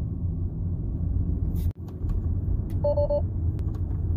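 Steady low road and drivetrain rumble inside a Tesla's cabin at low speed. About three seconds in comes a short electronic chime of quick two-pitched beeps: the car's alert as Autopilot refuses to engage.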